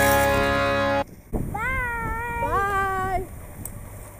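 A song ends abruptly about a second in. It is followed by two high-pitched cheering whoops from a person, each rising in pitch and then held, about a second long.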